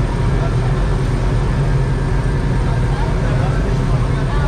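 Diesel passenger train idling at the platform: a steady low engine hum, with voices talking over it.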